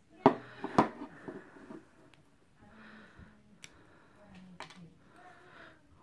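Wire being cut with the SOG PowerPlay multi-tool's plier-head wire cutters: two sharp snaps about half a second apart, followed by a few fainter clicks of the tool being handled.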